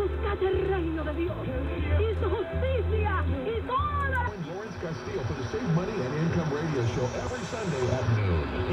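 AM broadcast stations received on a software-defined radio and played over a speaker: band-limited voice and music. The audio changes as the receiver is retuned to another station about four seconds in. The reception is strong with the loop antenna's preamp powered on, the sign that the preamp still works.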